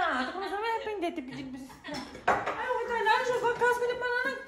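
A woman's voice, laughing and exclaiming without clear words, with a short knock about two seconds in.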